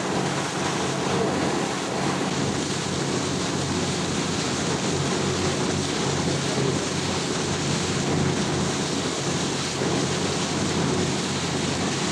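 Passenger ferry's engines running steadily, a low, even drone, under the rush of water along the hull from the wake. Wind buffets the microphone on the open deck.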